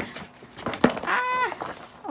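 Paper rustling and a sharp crinkle as a large folded album poster is opened out, then a woman's short wordless exclamation of delight, rising and falling in pitch.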